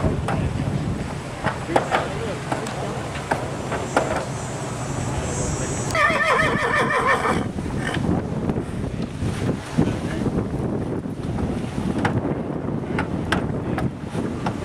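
A horse working an inclined wooden treadmill whinnies once, about six seconds in, a wavering call lasting about a second and a half, over scattered knocks of hooves on the treadmill.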